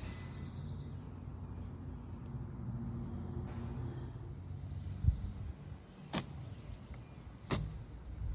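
A paint-loaded leafy branch slapping a stretched canvas: a dull thump about five seconds in, then two sharp slaps near the end, after a low steady rumble in the first half.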